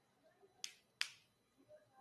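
Two short, sharp clicks, about a third of a second apart, the second the louder, in an otherwise near-silent room.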